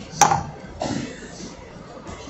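A single sharp tap or click about a quarter second in, followed by a softer, duller knock about half a second later.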